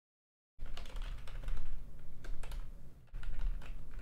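Computer keyboard clicking and typing in irregular strokes over a steady low hum. The audio is dead silent for about the first half-second, then cuts in abruptly: a stream dropout while the stream was frozen.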